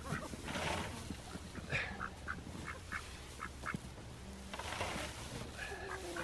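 Loose straw rustling as it is pulled and packed around the base of a chicken coop, with a run of about eight short poultry calls in the middle.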